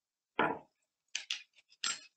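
Small kitchen clinks as spices are measured into the pot: a single dull knock, then a quick run of short, sharp metal-and-glass clicks from a measuring spoon against spice jars and the pot. Heard through a video call's audio, which drops to dead silence between the sounds.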